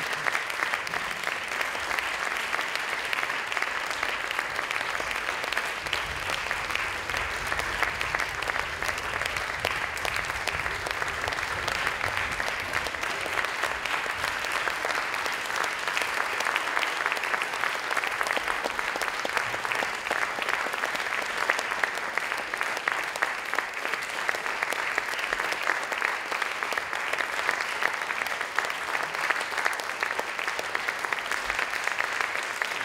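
Audience applauding in dense, steady clapping.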